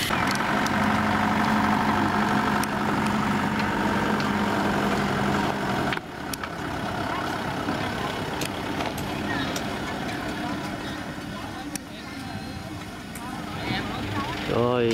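Light truck engines idling steadily, with voices in the background; the sound changes abruptly about six seconds in.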